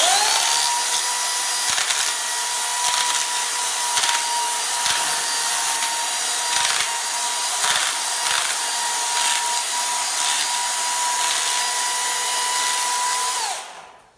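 Small electric chainsaw starting with a quickly rising whine, then running at a steady high whine as its chain cuts a wire channel into the polystyrene foam of an insulated concrete form wall, with uneven grinding noise from the cut. It switches off near the end.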